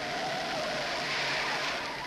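Lincoln Continental sedan driving fast past the camera, a steady rush of engine and road noise.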